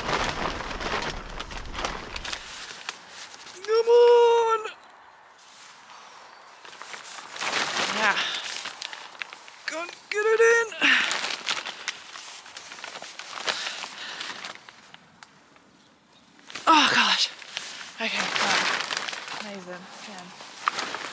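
Rustling of thin tent fabric and scraping of fibreglass tent poles as they are worked into the sleeves, broken by short high-pitched wordless exclamations of strain, the loudest about four seconds in, again about ten seconds in and near the end.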